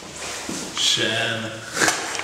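A wooden door being opened, with a rubbing creak about a second in and a sharp knock near the end, while a man makes a short wordless vocal sound.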